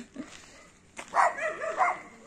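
A dog barking, a quick run of several loud barks starting about a second in.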